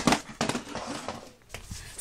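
Quiet handling noise and rustling from a phone being moved about, with a few faint knocks.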